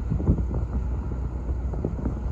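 Low, steady rumble of a distant jet airliner, with wind buffeting the microphone.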